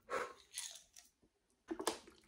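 Quiet mouth and handling sounds as tablets are swallowed with water: a few soft noises, then a quick run of sharp crackles near the end as a thin plastic water bottle is gripped and raised to drink.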